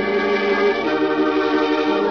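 Organ music playing held chords that shift a few times: a musical bridge in an old-time radio drama.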